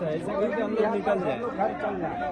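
Men's voices talking over one another: a man speaking amid a crowd's chatter.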